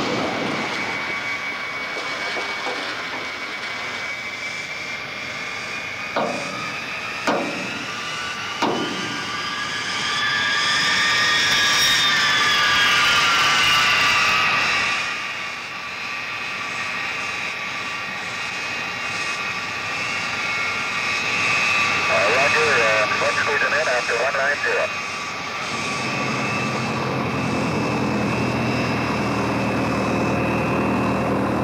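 Jet airliner engines whining, the pitch rising to a peak about twelve seconds in and then falling away, while a high steady whine stays on. There are three sharp clicks between about six and nine seconds in. Near the end a low piston-engine drone starts up, from the light biplane's engine.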